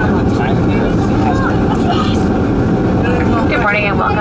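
Loud, steady rumbling roar inside the cabin of a Boeing 737-400 during the landing rollout. It is engine, airflow and runway noise as the jet decelerates with its spoilers up. A voice over the public-address speaker starts near the end.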